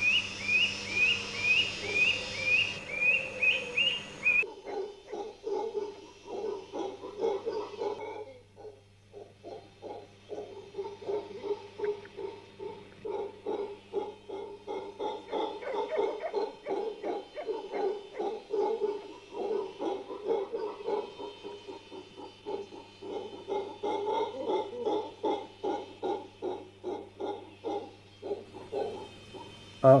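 Animal calls: a short call repeated about three times a second for the first few seconds, then a long run of rapid low pulsed calls, about four or five a second, over a steady low hum.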